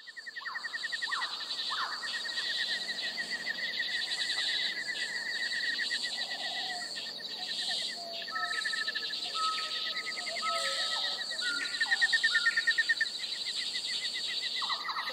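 A chorus of cicadas buzzing in a fast, steady pulse, which the speaker calls pretty loud. Birds call over it, with a run of short level whistled notes in the second half.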